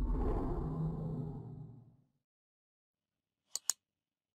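Outro animation sound effects: a low, noisy sound effect that fades out over about two seconds, then two quick mouse-click sound effects near the end.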